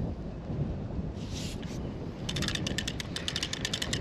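Low wind noise on the microphone, then from a little past halfway a fast, even clicking, about a dozen clicks a second, as the handle of a DAM Quick 550 spinning reel is cranked and its anti-reverse pawl ratchets over the teeth.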